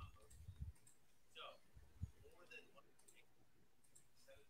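Near silence with a few faint clicks and soft thumps, the sharpest about two seconds in, and a faint murmur of a distant voice.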